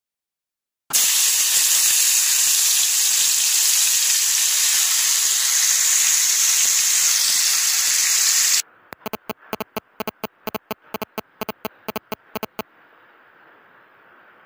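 Chicken pieces deep-frying in hot oil, with a loud, steady sizzle. About eight and a half seconds in, the sizzle cuts to a much quieter one broken by a quick, irregular run of sharp pops for about four seconds.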